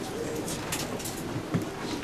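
Soft cooing of a pigeon over faint background noise in the hall, with a short light knock about one and a half seconds in.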